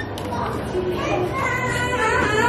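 Voices of people and children talking around the aquarium hall, with a higher child's voice rising clearly in the second half.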